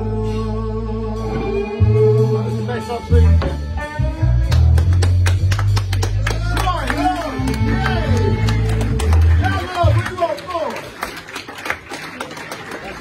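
Live rock band with electric guitar, bass and drums playing the closing bars of a song, with sharp hand claps from the audience over it. The bass and band drop away about ten seconds in, leaving scattered claps and voices.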